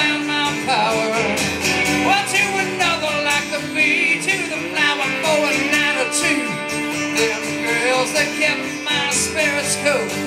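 Live band playing a country-rock song on strummed acoustic guitar and a second guitar, with a man singing.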